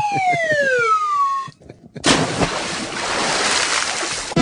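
A falling-whistle sound effect sliding steadily down in pitch for about two seconds, then, after a short break, a loud rushing noise with no pitch that runs on for about two seconds.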